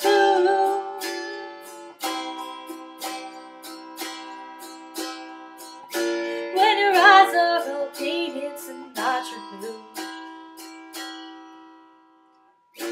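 Autoharp strummed in chords, about two strums a second, each chord ringing on, with a woman's voice singing a held, wavering note near the start and again in the middle. The strumming thins out and the last chord dies away near the end.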